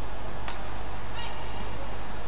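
Indoor badminton arena ambience: a steady low hum with a sharp click about half a second in and a brief high squeak a little after a second, like a shoe on the court floor.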